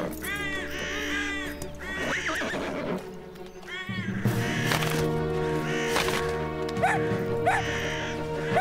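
Cartoon sound effects of a horse whinnying and crows cawing over background music. The calls come thickest in the first two seconds; after a short lull near the middle the music comes in steadier.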